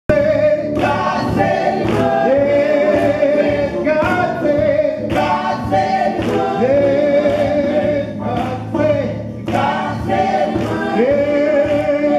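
A gospel vocal group of men and women singing together into microphones, holding long notes, over a sharp beat about once a second.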